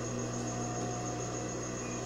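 Steady electric hum with a faint hiss from the industrial sewing machine's motor running while the needle is still. There are no stitching strokes.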